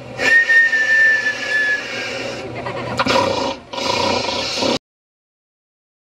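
Loud, noisy crowd din with one high whistle lasting about a second and a half, dropping slightly in pitch. The sound cuts off abruptly a little under five seconds in.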